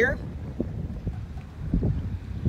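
Wind rumbling on the microphone: a steady low buffeting with a few faint low knocks.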